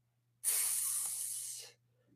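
A hiss at the mouth from a small handheld metal device held to the lips, starting about half a second in and fading away over just over a second.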